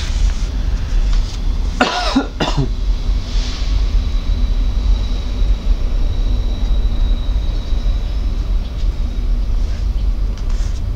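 A man coughs once about two seconds in, over a steady low background rumble.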